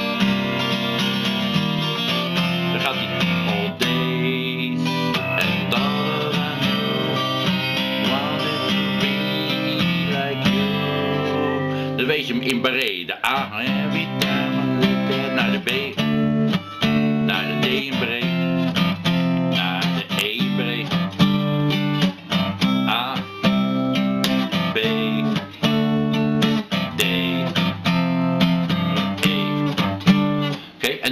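Steel-string acoustic guitar with a capo, strummed chords in a steady rhythm. From about twelve seconds in the playing breaks into shorter phrases with brief gaps between them.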